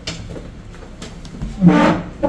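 A small plastic card case set down on a wooden chair seat with a light click, then a brief wordless vocal sound near the end.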